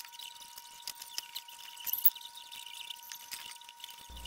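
Small 3D-printed plastic parts clicking and tapping against each other as they are handled and pushed together by hand: an irregular scatter of light ticks, a little stronger about one and two seconds in, over a faint steady high tone.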